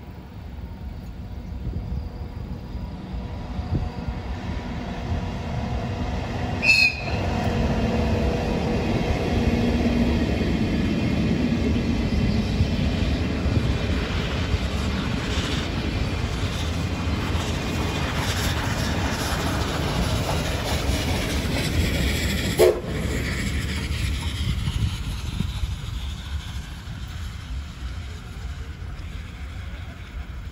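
The SL Gunma train, a steam locomotive with brown passenger coaches and a blue electric locomotive in the consist, approaching and passing with a growing rumble and wheels clattering over the rails. A short high-pitched horn toot sounds about seven seconds in, and a brief lower-pitched whistle blast about twenty-three seconds in.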